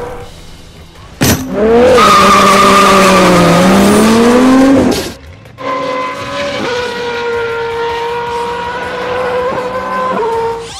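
Race-car sound effect for toy cars: a sharp click, then a loud tire squeal whose pitch wavers and bends for about three and a half seconds, stopping suddenly. After a short gap comes a steadier, even-pitched running sound.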